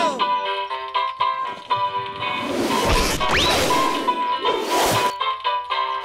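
Cartoon background music with comic sound effects of a tumble: a crash about halfway through with a quick rising whistle, then a second, shorter crash near the end.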